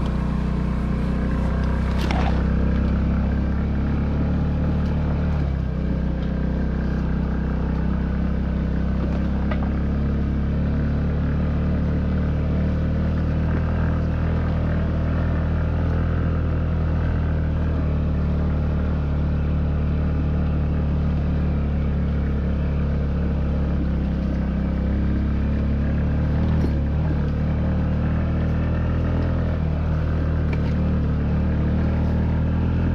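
Honda Ruckus scooter's 49cc single-cylinder four-stroke engine running at a steady speed while riding a rough dirt track. There is one sharp knock about two seconds in.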